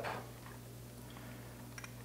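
A couple of faint light ticks near the end from a small open-end wrench on the hose connector of an SU HS4 carburetor, as the fitting is snugged up, over a steady low hum.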